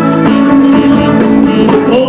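Live band playing an instrumental passage with electric guitar prominent.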